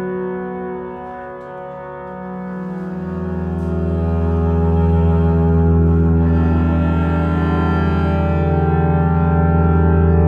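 Solo cello with electronic reverb and delay playing long sustained tones that blur into a steady chord. A new low note enters about three seconds in and swells, then holds.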